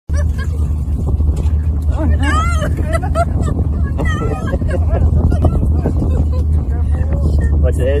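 Safari vehicle's engine running with a steady low rumble, with people's voices exclaiming over it a few times.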